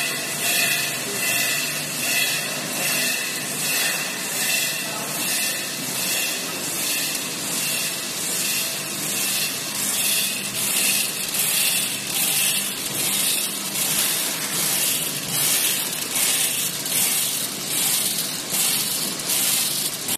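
Automatic multihead weigher and vertical packing machine running, with a rhythmic hiss that pulses about twice a second and grows plainer in the second half.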